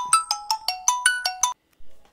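Mobile phone ringtone: a quick melodic run of electronic notes stepping up and down in pitch, about six or seven a second, cut off abruptly about one and a half seconds in.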